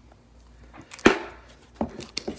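Handling of a gold chain and its hinged jewelry box: one sharp click about a second in, with a couple of fainter clicks before and after it.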